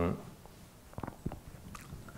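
A man's low hummed 'um' trailing off, then a pause in faint room tone broken by a few small clicks.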